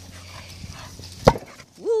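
A ball struck once on grass, a single sharp thump a little over a second in, followed near the end by a short rising-and-falling 'ouh' from a woman's voice.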